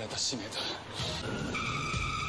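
Dialogue from the TV show's soundtrack, then a steady high-pitched tone that starts just over a second in and holds.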